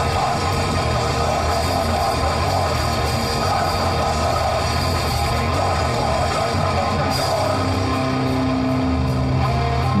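A grindcore band playing: distorted guitars, bass and drums in a loud, dense, unbroken wall of sound, with a low held note ringing near the end.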